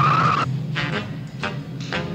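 Cartoon underscore music with a short, steady high tone for about half a second at the start, followed by a few sharp percussive hits.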